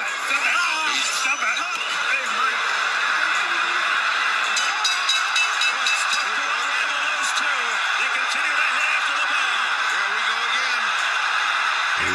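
Boxing arena crowd noise: a steady din of many spectators' voices throughout, with no single voice standing out.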